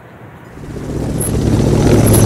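Aircraft engine noise fading in about half a second in and growing steadily louder, a deep rumble with a low hum.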